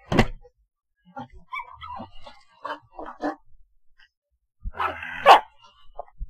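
A dog barking: one sharp bark right at the start and a longer, louder bark about five seconds in, with fainter sounds between.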